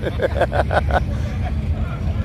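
Steady low rumble of car engines running, with people talking faintly in the background during the first second.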